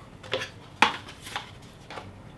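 Hard plastic clicks and taps from handling a Bunker Kings CTRL paintball hopper: a light tap, then a sharp click just under a second in, then a fainter tap.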